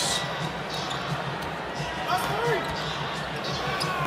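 A basketball being dribbled on a hardwood court over a steady hum of arena crowd noise. A single voice briefly calls out about two and a half seconds in.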